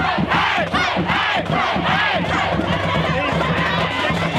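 A crowd of many voices shouting and cheering at once.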